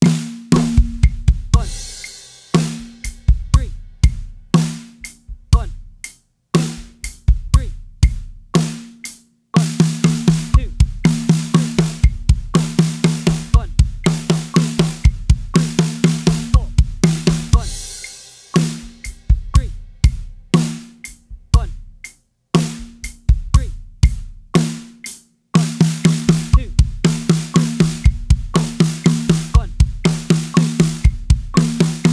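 Acoustic drum kit played at a slow-to-medium tempo: a two-bar linear sixteenth-note fill built from groups of six, each ending in two bass drum strokes, five sixes plus two leftover strokes. The unbroken fill runs for about eight seconds from roughly a third of the way in, sparser groove-like playing comes before and after it, and the fill starts again near the end.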